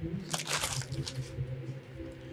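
Hockey trading cards handled on a glass counter: a papery rustle and scrape about half a second in as the stack is set down and slid, then lighter shuffling of the cards, over a faint steady hum.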